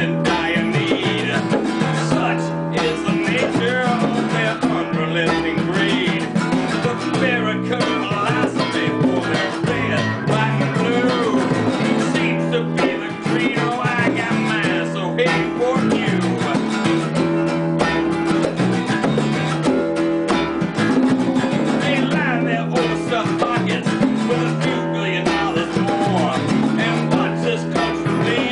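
Small live band playing a song: an acoustic guitar strummed, with an electric guitar and a djembe hand drum keeping time.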